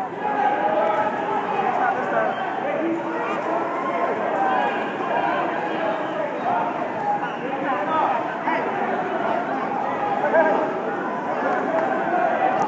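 Chatter of many overlapping voices from spectators and coaches around a wrestling mat, with no single voice standing out.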